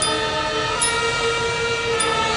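Marching band's horns and winds holding a long, sustained chord, with a few short, high metallic strikes from the percussion.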